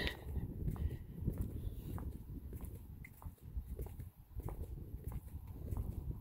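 Footsteps on a concrete pad, a faint tick about every half second, under a low rumble of wind on the microphone.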